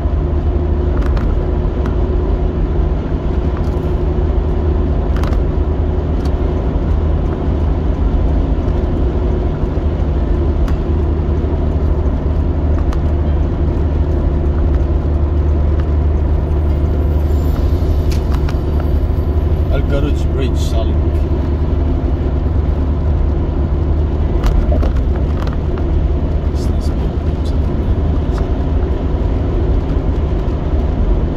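A car cruising, heard from inside its cabin: a steady low rumble of road and engine noise.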